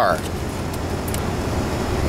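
A car heard from inside its cabin: a steady low rumble with hiss over it, and a couple of faint clicks.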